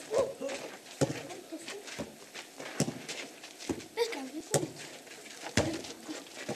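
Children's voices calling, with sharp knocks about once a second.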